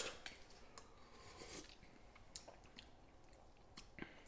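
Near silence, with faint sips of broth taken from spoons and a few light clicks scattered through it.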